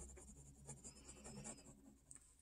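Faint scratching of a pen tracing lines on lined notebook paper, in short irregular strokes over a low steady hum.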